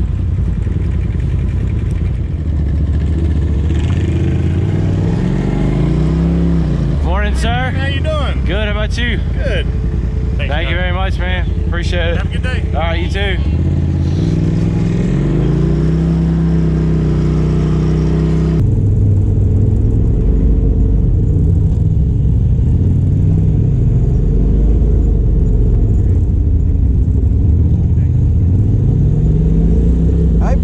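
Polaris RZR Turbo side-by-side engine running at low speed, its pitch rising and falling with the throttle. A voice is heard briefly in the middle.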